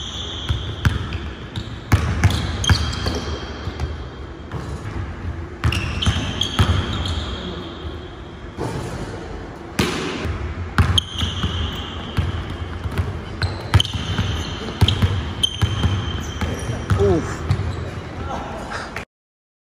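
A basketball dribbled on a hardwood gym floor in quick, irregular bounces, with high sneaker squeaks on the floor, some held for up to a second, as the players cut and move.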